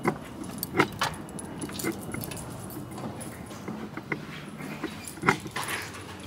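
Irregular light clicks and clatter of walking and handling, ending as a metal-framed glass entrance door is pulled open; a low steady hum comes in about four seconds in.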